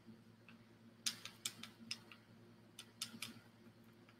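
Faint, scattered taps and clicks of a paintbrush and a small wooden cutout being handled while dry brushing, in two short clusters about a second in and near the end.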